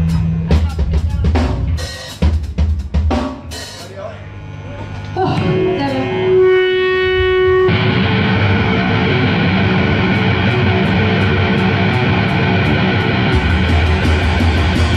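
Live punk band starting a song. Scattered drum hits come first, then a single held note rings out, and about eight seconds in the full band comes in with distorted electric guitars, bass and drum kit and plays on loudly.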